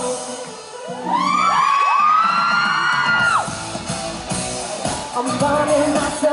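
Boy band singing live over a pop backing track in a large hall. About a second in, the bass drops away under a long high held vocal note, and the full beat comes back near the end.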